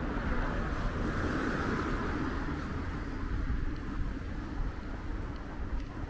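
Street ambience on a night walk: a low wind rumble on the microphone, with the noise of an unseen vehicle swelling and fading in the first two seconds.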